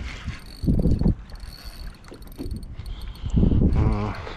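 Water sloshing against a plastic sit-on-top kayak hull as it is backed up, in two heavier surges about a second in and near the end, with light clicking over the top.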